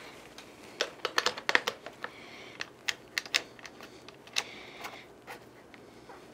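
A large telephoto lens being mounted onto a gimbal tripod head: irregular sharp clicks and knocks as the lens plate is set into the clamp and tightened.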